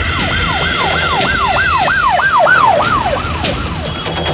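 Police siren sound effect: a quick, repeating falling wail, about three sweeps a second, fading out near the end, over a low rumble.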